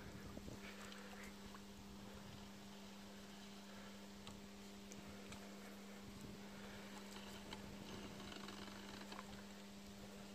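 Near silence: a faint steady hum with a few faint scattered ticks.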